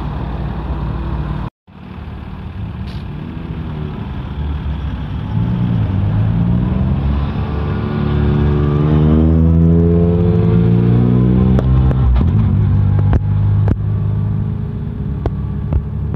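Ford Fiesta R2 rally cars running at idle, then one pulling away with its engine note rising steadily as it accelerates. The sound cuts out for a moment about one and a half seconds in, and a few sharp clicks come near the end.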